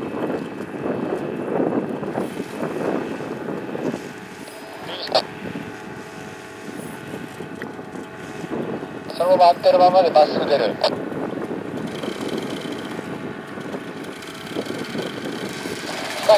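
Paramotor engine idling steadily, with wind buffeting the microphone in the first few seconds.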